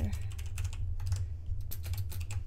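Computer keyboard typing: a quick run of keystrokes over a steady low hum.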